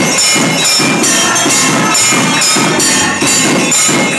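Loud rhythmic percussion music with ringing, clanging metal over a beat of about two strokes a second.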